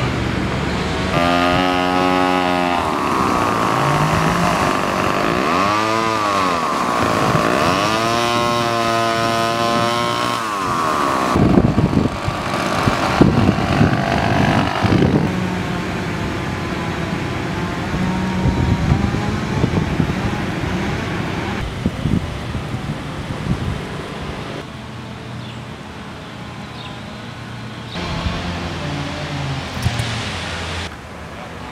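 A small petrol engine revving up and down about three times in the first ten seconds, rising and falling in pitch each time. This gives way to a rougher, noisier stretch of engine and outdoor sound that grows quieter near the end.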